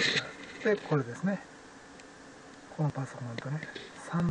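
A man's low voice in two short stretches of indistinct murmuring, about a second in and again about three seconds in, over a faint steady hiss.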